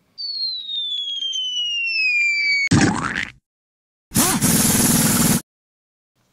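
Logo-intro sound effect: a whistle falling in pitch for about two and a half seconds that ends in a bang, then after a short silence a second burst of steady noise lasting just over a second.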